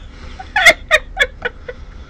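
A person laughing in a quick run of short pitched bursts, about four a second, fading toward the end.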